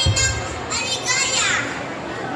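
A young boy's high-pitched voice speaking into a microphone over a PA in short phrases, its pitch rising and falling. There is a brief low thump right at the start.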